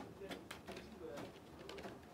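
Quiet handling of a plastic-wrapped pencil pack: a few faint clicks and crinkles, with a low murmur underneath.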